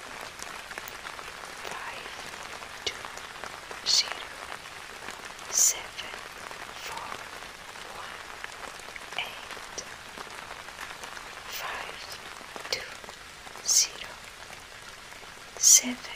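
Steady rain ambience, a relaxation sound bed, with a few brief sharper high-pitched drops or splashes standing out: about four seconds in, near six seconds, and twice near the end.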